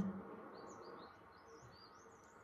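Faint birdsong: a small bird giving a quick run of short, high chirps, starting about half a second in.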